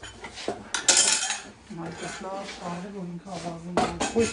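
Wooden spoon stirring and scraping thick semolina halva in a frying pan, with a loud scrape about a second in.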